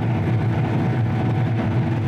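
John Deere S600-series combine engine running steadily at high idle, a constant low drone heard inside the cab.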